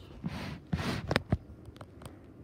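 Handling noise at a tabletop: two short rustling sounds, then two light knocks a little after a second in.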